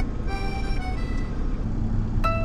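Soft background music, a few held notes that thin out and then pick up again near the end, over a steady low rumble.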